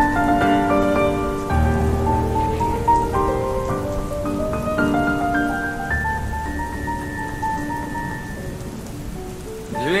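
Instrumental break of a rock song: a lead electric guitar plays long held notes that step up and down in pitch over low bass notes, with a steady rain-like hiss underneath. Right at the end a voice slides up into the next sung line.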